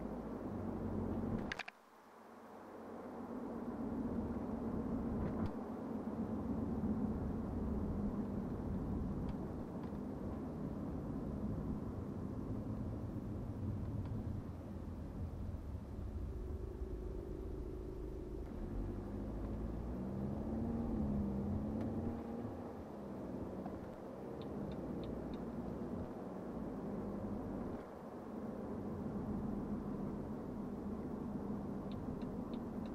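In-cabin sound of a BMW 520d F10 on the move: a steady low rumble of road noise and its four-cylinder turbodiesel. About two seconds in there is a click and the sound drops away sharply, then builds back up over the next couple of seconds; in the second half an engine tone wavers up and down.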